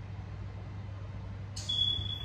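A zero-gravity massage chair's single high electronic beep, a steady tone lasting under half a second near the end, over a low steady hum.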